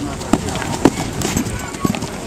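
A horse galloping on grass: a string of hoofbeats about half a second apart, over the murmur of a crowd.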